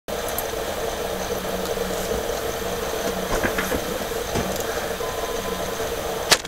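Steady hum and hiss of background noise, with a few faint knocks and rustles about halfway through.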